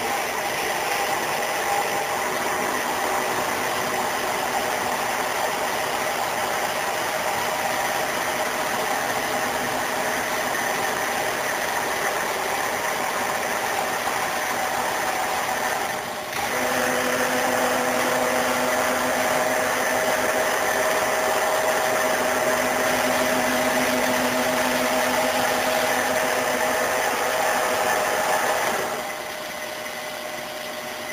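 Phoebus PBM-GVS 300A milling machine running, a steady mechanical hum with a gear whine of several steady tones. About halfway through it dips briefly and settles at a new, louder speed with clearer tones, then drops in level near the end.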